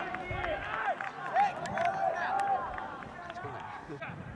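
Several young men's voices shouting and cheering over one another outdoors, celebrating a goal, with scattered sharp clicks; the shouts thin out in the last second.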